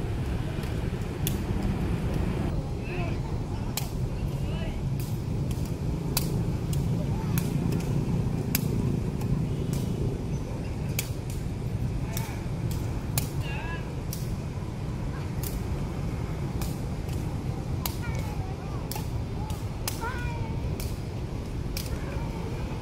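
A kicked shuttlecock passed back and forth in a rally: a string of sharp taps, roughly one or two a second. Under it runs a steady hum of motorbike traffic.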